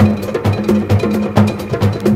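Live jazz band music in a percussion-led passage: sharp, bell-like hand-percussion strikes about three a second over a repeating bass line.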